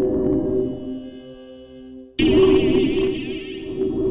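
Synthesizer chords played on a keyboard: a sustained chord fades down over the first two seconds, then a new, loud chord starts abruptly about halfway through, with a wavering high tone on top.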